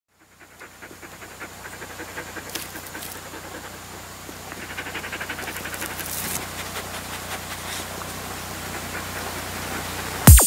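Quiet intro of a sped-up electronic pop track: a rapid fluttering pulse with bright hiss over a low steady hum, slowly growing louder.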